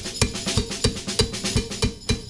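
Live band music without vocals: a drum kit plays a quick, steady beat of sharp hits several times a second, with a bright bell-like percussion part, over sustained pitched instruments.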